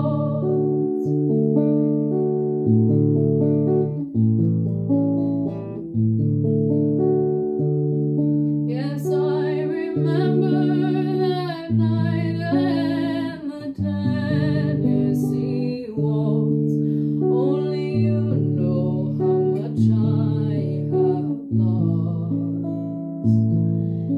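Archtop guitar played in a slow waltz, its chords changing about once a second, with a woman singing over it from about nine seconds in, her voice wavering in a light vibrato.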